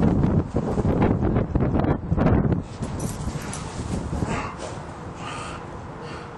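Dog barking: several loud barks in the first two and a half seconds, then quieter, with a couple of short higher-pitched sounds near the end.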